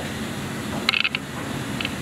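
A few short plastic clicks and taps, a cluster about a second in and a fainter pair near the end, as hands take hold of a water softener's plastic brine tank, over a steady room hum.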